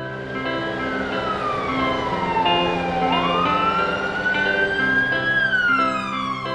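Cartoon ambulance siren sound effect wailing slowly: its pitch falls, rises, then falls again. It plays over cheerful background music.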